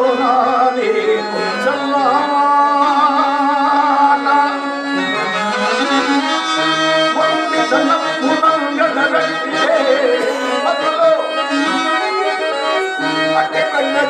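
Harmonium playing a melody over a held low note, which breaks off briefly about five seconds in and then resumes.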